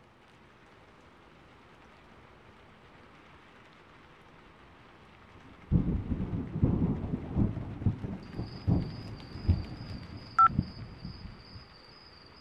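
Steady rain that fades in, then a sudden thunderclap about halfway through, followed by several seconds of rolling, crackling thunder.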